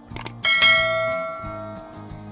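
Subscribe-animation sound effect: a couple of quick clicks, then a bell chime about half a second in that rings out and fades over about a second and a half. Background music with a steady beat runs underneath.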